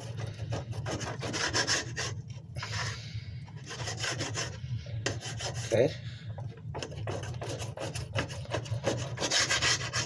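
A kitchen knife sawing through raw chicken breast, the blade scraping and clicking against the plate beneath in repeated back-and-forth strokes.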